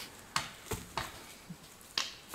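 Dry sticks knocking and cracking: about five short, irregular hits over two seconds.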